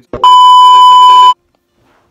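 A single loud, steady electronic beep lasting just over a second, starting a moment after a brief click and cutting off suddenly.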